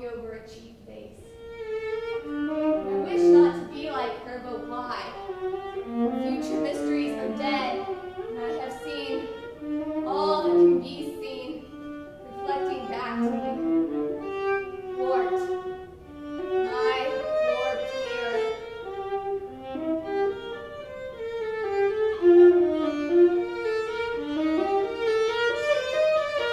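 Solo violin playing a classical melodic line, entering softly and growing fuller about two seconds in.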